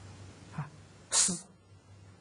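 A single short, loud, hissing burst of breath from the lecturer about a second in, with a faint voiced sound just before it.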